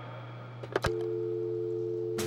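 A couple of sharp clicks of a phone handset, then a steady two-note telephone dial tone from about a second in, over a faint low hum.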